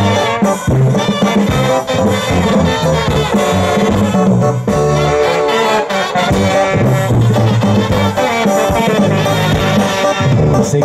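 Live Mexican banda music, instrumental: trombones and trumpets playing the melody over a sousaphone bass line and drums, at a steady dance rhythm.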